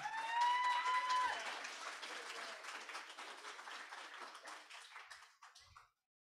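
Congregation applauding, the clapping dying away over about five seconds, with one high voice held briefly over it in the first second.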